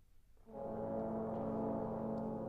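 A trombone section plays one sustained low chord. It enters about half a second in and is held steady.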